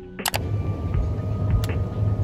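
Steady low rumbling shop ambience picked up on a handheld phone microphone, opening with a sharp double click about a third of a second in and a few lighter clicks later, over faint background music.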